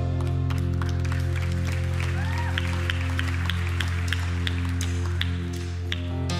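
Worship band holding a sustained chord on keyboard and bass, with scattered clapping from the congregation.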